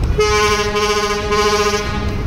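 A river passenger launch's horn sounding one long steady blast of about a second and a half, over a steady low rumble.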